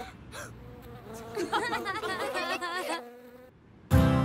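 A cartoon bee character's buzzing, warbling voice, wavering quickly up and down in pitch for about a second and a half in the middle.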